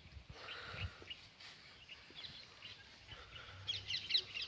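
Faint birds chirping, with a quick run of chirps near the end.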